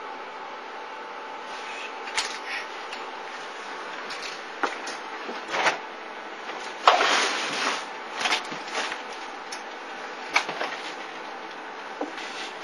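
Scattered knocks and clicks, with a longer rustling burst about seven seconds in, over a steady background hiss.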